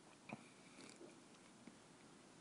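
Near silence: room tone, with one faint short click about a third of a second in and two fainter ticks later.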